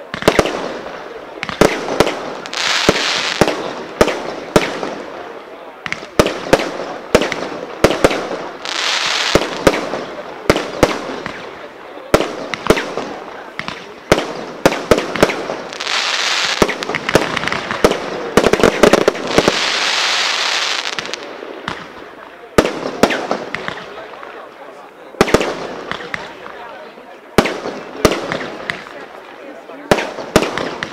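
Professional fireworks cake firing: a rapid, uneven series of sharp launch thumps and bursting bangs, with several stretches of dense crackling where crackle stars break in the sky.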